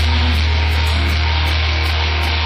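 Live rock band playing: a low note held under guitar, with a cymbal ticking about three times a second.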